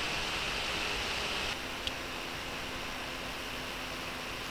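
Steady background hiss with no speech. About one and a half seconds in it drops to a softer hiss with a faint steady hum, and there is one faint click shortly after.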